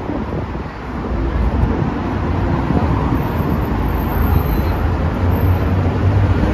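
Road traffic on a wide city avenue: cars driving past in a steady low rumble that swells a little about a second in.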